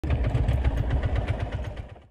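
Go-kart engine idling with a steady, rapid low beat, fading out near the end.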